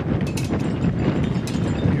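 Wind buffeting the microphone: a loud, uneven low rumble with a few faint clicks through it.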